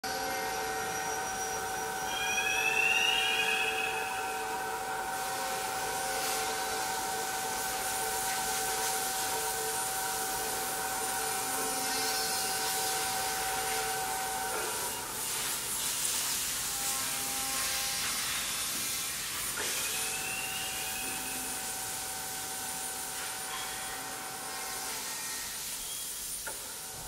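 A steady hissing drone with several held tones, which change about halfway through, and a few brief rising chirps near the start and again later.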